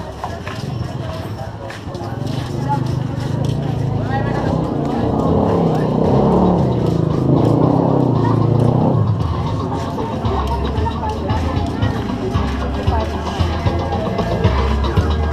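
Busy street-market sound with people talking, and a motorcycle engine running loudly past through the middle. Music with a steady bass line comes in near the end.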